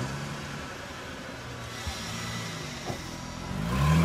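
Car engine sound effect running at a steady low idle, with short blips about two and three seconds in, then revving up, rising in pitch and loudness near the end.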